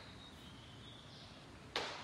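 A pause in speech with faint room noise, then one short sharp burst of noise near the end.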